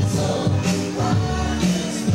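Dance music with singing and a steady beat of about two beats a second.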